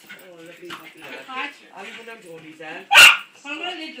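A small dog barks once, short, sharp and loud, about three seconds in, as it jumps up at a balloon.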